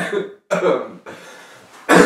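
A person coughing: two short coughs in the first second, a quiet breathy pause, then another cough starting right at the end.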